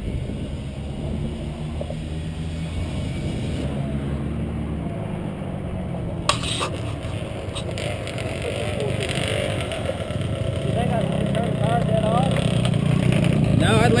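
ATV engine idling steadily, with a single sharp knock about six seconds in.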